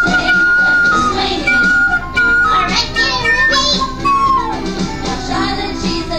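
Small end-blown flute played over a recorded backing song with a steady beat, holding long high notes with short slides between them.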